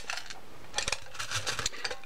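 Small gold and silver beads clicking and rattling against each other and the sides of a clear plastic box as fingers stir through them, in scattered light clicks that cluster about a second in and again over the second half.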